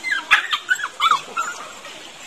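A run of short, high yelps or whimpers from an animal, each rising and falling in pitch, packed into the first second and a half.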